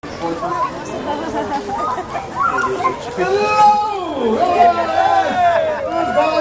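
Crowd chatter: several voices talking and calling over one another, none clearly in front.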